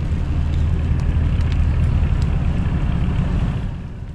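Steady low rumble of a passing motor vehicle, fading away near the end.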